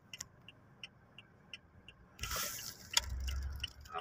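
Car noise heard from inside a car: faint regular ticking for about two seconds, then engine and tyre noise rising just past halfway, with a low rumble near the end as an oncoming car passes close by.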